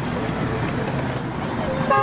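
Roadside ambience: steady road-traffic noise with people's voices mixed in.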